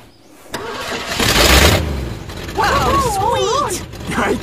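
Car engine cranking and catching: a loud burst of engine noise about a second in that then eases off as the engine keeps running. Near the end a voice gives a wavering, warbling whoop over it.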